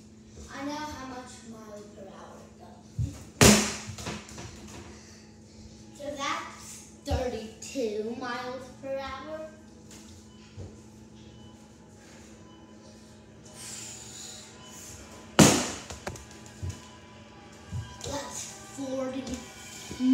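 Two sharp impacts about twelve seconds apart, a thrown ball hitting something hard, with a few lighter knocks and murmured voices between them.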